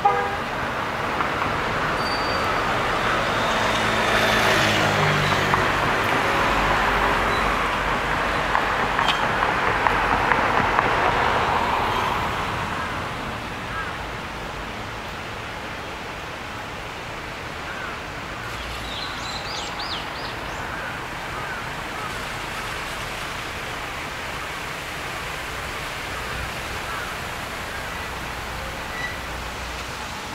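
A road vehicle passing by: its sound swells over the first few seconds, is loudest about ten seconds in and fades out by about twelve seconds. After that comes a steady, quieter background of traffic.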